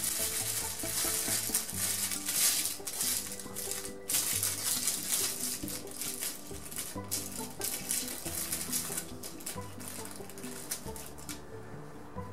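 Aluminium foil crinkling and crackling as its end is rolled and crimped shut around an epee blade, over background music.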